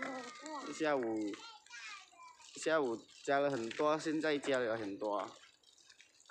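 People talking in short phrases throughout, speech that the recogniser did not write down as words.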